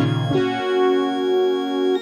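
Synthesizer improvisation on a Roland Juno-106 and a Casio CZ-101: sustained, layered notes held over one another, with a low bass note dropping out about half a second in while the upper notes shift.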